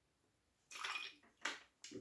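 Gin being poured: a faint, brief splash of liquid starting under a second in and lasting about half a second, followed by two very short soft sounds.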